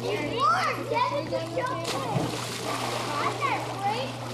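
Young children's voices rising and falling over water splashing in a small pool, with a steady low hum underneath.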